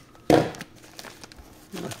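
Paper mailer envelope rustling and crinkling as gloved hands handle it, with one louder crinkle about a third of a second in and faint crackles after.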